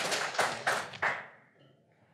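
Audience applause dying away, a few last separate claps about half a second apart, then quiet.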